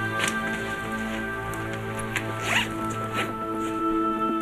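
Dramatic background music of soft chords held steadily, with two brief noises, one just after the start and one a little past halfway.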